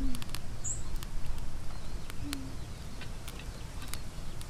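Wood fire in a block stove's firebox giving scattered sharp crackles and clicks as sticks are fed in. A bird gives a brief high chirp near the start, and a low, short, falling coo-like call comes twice, at the start and about halfway through.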